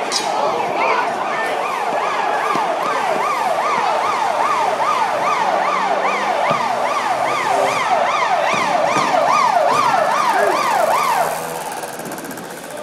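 Emergency vehicle siren in fast yelp mode, its pitch sweeping up and down about three times a second. It is loud and cuts off about eleven seconds in.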